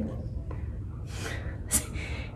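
A short, soft breath about a second in, then a brief sharp hiss of breath near the end, in a quiet room.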